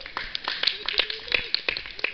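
Audience applauding: many quick, irregular hand claps.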